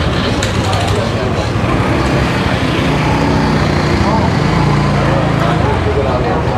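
Busy street traffic, with motorbike and car engines running, and background voices of people talking.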